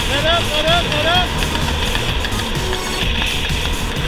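Wind rushing over the camera microphone under a tandem parachute canopy in a hard right turn, with a man's whoops rising and falling during the first second or so.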